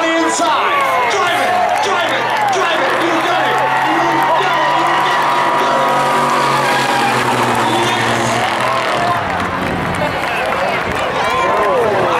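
A 2002 Chevy Silverado 2500HD's 6.0 V8, breathing through Flowmaster mufflers, runs hard while the truck drifts, with its rear tyres squealing and smoking. The engine note holds steady through the middle and drops away about nine seconds in. Voices carry over it at the start and near the end.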